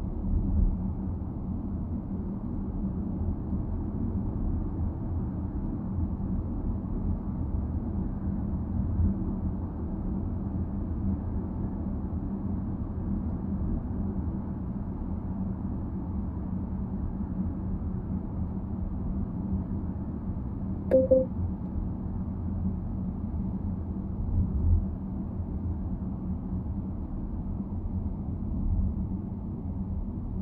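Steady low rumble of a car driving on a city expressway: tyre and engine noise, muffled and heard from inside the cabin. A short beep sounds once about two-thirds of the way through.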